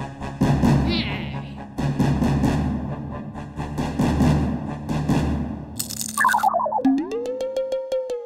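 Cartoon soundtrack music with a steady low beat and percussion strokes. About six seconds in, a falling run of short tones gives way to a comic sound effect: a quick rising glide into a held, fast-pulsing tone.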